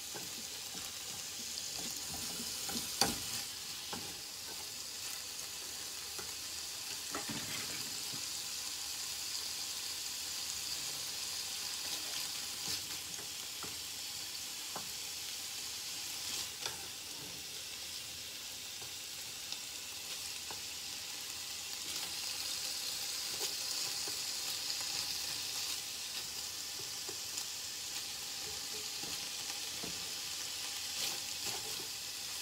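Thin-sliced pork sizzling in oil in a frying pan over medium heat, stirred with chopsticks: a steady hiss with a few sharp clicks of the chopsticks against the pan, the loudest about three seconds in.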